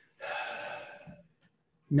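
A man's sharp intake of breath, under a second long and fading as it goes. It is followed near the end by the start of his speech.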